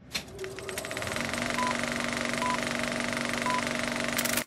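Film projector sound effect: a fast, even mechanical clatter over a steady hum, starting suddenly, with three short beeps about a second apart as the film-leader countdown runs.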